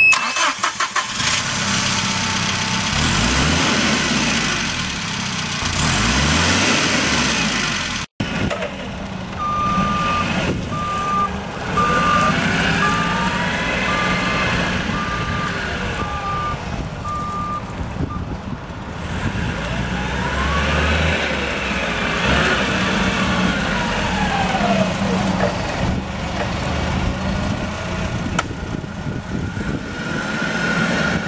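Komatsu FG20ST-16 propane forklift's four-cylinder engine starting and revving up and down. After that it runs while the forklift manoeuvres, and a warning beeper sounds a little more than once a second for about eight seconds.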